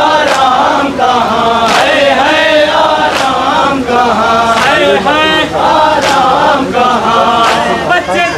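Men's voices chanting a Shia mourning sada in unison, with a sharp slap of hands striking chests in time about every one and a half seconds: rhythmic matam.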